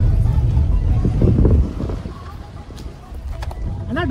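Car driving on an unpaved road, heard from inside the cabin: a heavy low road-and-wind rumble for about the first second and a half, then a lighter one.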